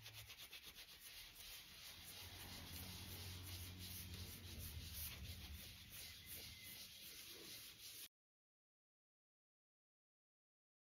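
Faint rubbing of a balled-up scrim wiped back and forth over an inked collagraph plate, in repeated strokes, working the ink into the plate's textures. It cuts off to dead silence about eight seconds in.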